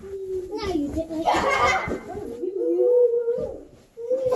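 A child's voice making drawn-out wordless sounds, with a rough noisy burst about a second and a half in.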